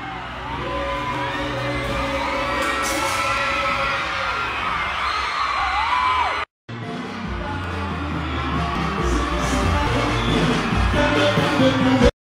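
Live pagode baiano music with a crowd singing along, whooping and cheering. The sound cuts out for a split second about six and a half seconds in, then the music and crowd carry on.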